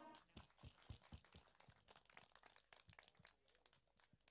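Near silence with faint, scattered hand claps from a small audience, thinning out and stopping a little over three seconds in.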